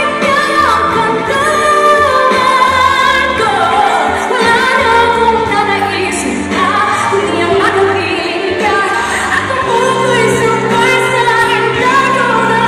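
A female pop singer singing live into a handheld microphone over instrumental backing, her melody sliding between held notes above a steady bass line.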